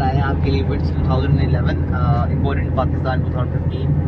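Steady low engine and road drone of a Toyota Vitz 1.0 hatchback driving at speed, heard from inside the cabin, with people talking over it.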